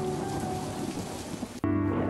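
Rain-and-thunder sound effect with music fading out under it, cut off about one and a half seconds in by a music bed with steady low notes.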